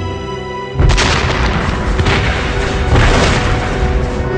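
Film soundtrack music, cut about a second in by a sudden loud explosion, followed by continuing blast noise with further booms about two and three seconds in.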